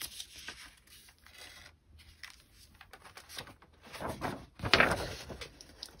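Paper rustling and being peeled off an inked linocut block, the tacky ink giving a crackly, tearing sound, loudest and longest about four to five seconds in.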